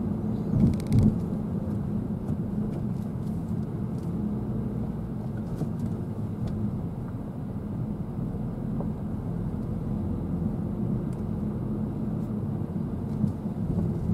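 Car cabin road noise while driving slowly in traffic: a steady low rumble of engine and tyres heard from inside the car, with a brief knock about a second in.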